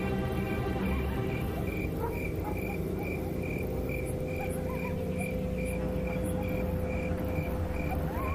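Crickets chirping at an even pace, about two chirps a second, over low dramatic background music that holds a long steady note in the second half.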